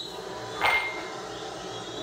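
A single sharp clink with a short ringing tone, a little over half a second in, against a low, steady background.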